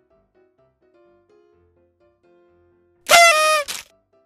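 Faint background melody, then about three seconds in a loud horn-like blast that drops in pitch for about half a second, followed by a brief second blast, used as a comic sound effect.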